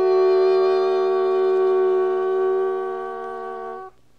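Wind instruments of a jazz chamber ensemble holding one chord for nearly four seconds. It fades slowly and breaks off into a brief gap near the end.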